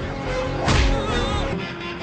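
Film soundtrack: background score with one sharp, whip-like hit about two-thirds of a second in, followed by a brief wavering high tone.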